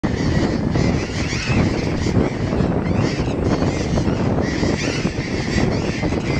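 A colony of burrowing parrots calling, many calls overlapping without pause, several each second.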